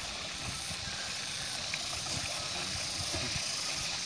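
Steady outdoor background noise: an even hiss over an irregular low rumble, with no distinct event standing out.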